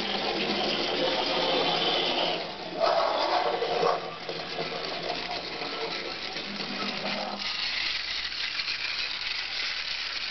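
The clockwork spring motor of a c.1910 Gunthermann tinplate motorcycle toy running: a fast, continuous mechanical rattle and whirr of the gears, chain drive and tin body. It grows louder about three seconds in, and from about seven seconds it turns lighter and thinner.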